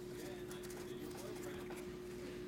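A stack of O-Pee-Chee Platinum hockey cards being handled and squared in the hands, giving a series of light clicks and taps of card edges, over a steady electrical hum.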